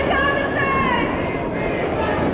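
Outdoor crowd noise: raised voices shouting over a steady, dense rumble of background noise.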